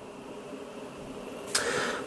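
Quiet room tone, then near the end a short breathy hiss: a person drawing breath.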